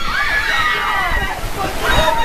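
Heavy rain pouring steadily onto and around a party tent, with people whooping and shouting over it.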